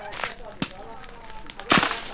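A long bamboo pole jabbed up into a coconut palm's crown: a few light knocks, then one loud, brief rustling crack near the end as it strikes the top of the palm. Faint laughter underneath.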